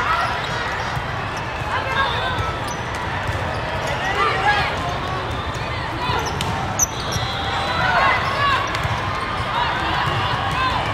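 Indoor volleyball rally: athletic shoes squeaking on the court and the ball being struck, with one sharp hit about seven seconds in. Behind it is the steady chatter of a crowded, echoing hall.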